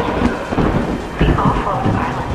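Film soundtrack of a city in heavy rain: a steady hiss of rain under deep rolling rumbles like thunder. One rumble swells about a second in.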